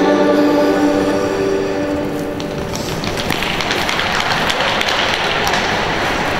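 Skating program music with held notes ends about two seconds in. It gives way to a steady patter of hand-clapping from a small audience in a large rink hall.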